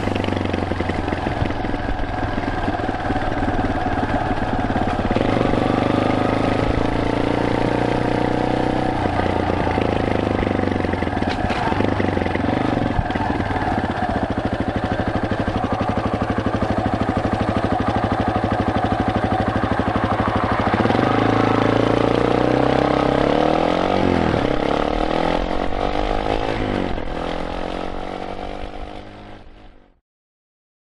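Yamaha Serow single-cylinder four-stroke trail bike running, heard from the rider's helmet. About two-thirds of the way in, the engine pulls away with its pitch rising and falling through the gears. The sound fades out at the end.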